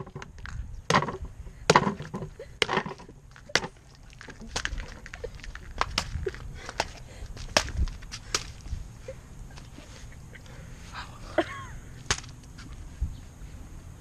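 A blunt homemade cast-aluminium sword hacking at a watermelon in repeated hard blows: about five heavy, wet smacks in the first four seconds, then lighter knocks every second or so. The crude blade smashes the melon rather than slicing it.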